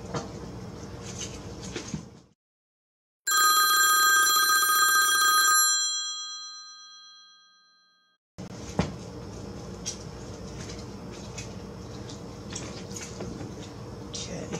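Phone clock alarm tone: a bright, bell-like ringing chime of several pitches that sounds for about two seconds and then fades away over the next two. Just before and just after it the sound drops to dead silence, with steady low background noise at the start and again from about halfway through.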